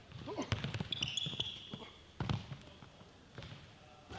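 A basketball dribbled on a hardwood gym floor, a few sharp separate bounces, with a short high squeak about a second in.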